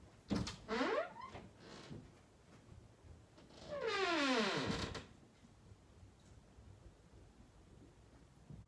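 A door creaking twice, two falling, squeaky glides: a short one with a knock near the start, then a longer, louder one about four seconds in.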